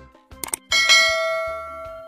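Two quick click sound effects, then a bright bell chime that rings out and fades: the bell-ding effect of an animated subscribe button and notification bell.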